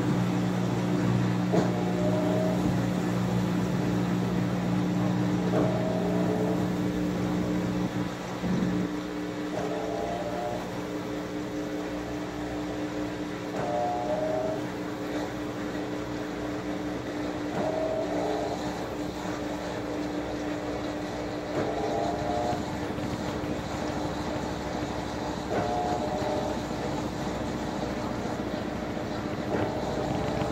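Top-loading washing machine spinning its tub with the agitator in the centre: a steady motor hum, with a short two-tone sound recurring about every four seconds. The lowest part of the hum drops away about eight seconds in.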